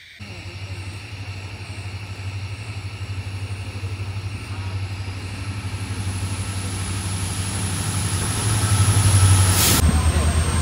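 A passenger train approaching and drawing into the station with a low, pulsing engine rumble that grows steadily louder. A high steady whine joins about halfway through. A brief sharp sound comes near the end as the locomotive reaches the platform.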